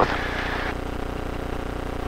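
Light aircraft's piston engine idling while taxiing, a steady drone with an even low hum, heard through the cockpit intercom. A layer of hiss over it drops away under a second in.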